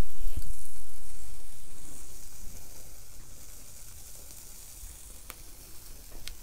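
Meat patties sizzling on a small portable charcoal grill, loud at first and growing steadily fainter, with a single pop near the end.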